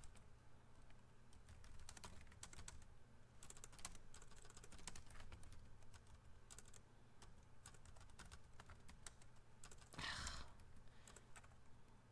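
Faint typing on a computer keyboard: irregular key clicks in short runs with pauses between.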